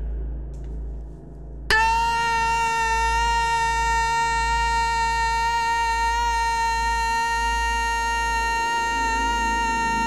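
A man's long scream held at one steady high pitch, starting suddenly about two seconds in and carrying on without a break.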